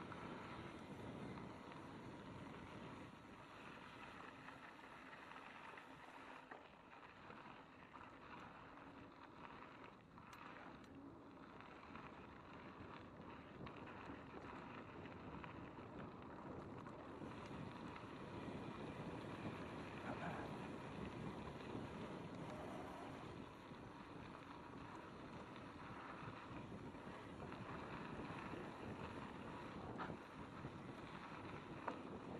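Mountain bike rolling fast down a dirt and gravel trail: steady tyre noise and rattling of the bike, with wind on the microphone, a little louder in the second half.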